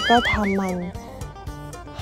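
A woman speaking Thai over background music, with a high wavering tone that wobbles slowly for about the first second.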